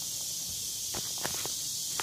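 A few soft footsteps on a wooden boardwalk, starting about a second in, over a steady high hiss.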